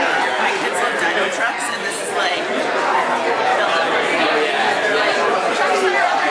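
Many people talking at once in a crowded room, an even murmur of overlapping conversations with no single voice standing out.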